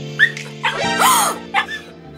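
Small long-haired Chihuahua yipping three times, the middle cry longer and rising then falling, over background music.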